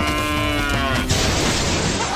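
Cartoon sound effects: a long, held, buzzy cry that dips in pitch at its end, cut off about a second in by a loud rush of noise like a crash.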